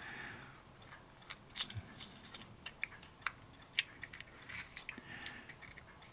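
Faint, scattered small clicks and ticks of plastic model kit parts being handled and pushed together: twin gun barrels being dry-fitted into a small plastic turret.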